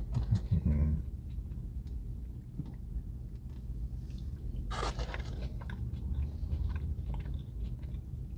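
A man chewing tater tots with wet mouth sounds and small clicks, a steady low hum underneath, and a brief louder crackle near the middle.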